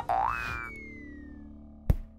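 Cartoon sound effects of an animated logo sting: a boing that rises in pitch just after the start, then a long falling tone over a held low tone, and a sharp hit near the end.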